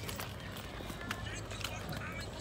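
Footsteps on a concrete walkway: scattered light steps and clicks, with a child's faint voice near the end.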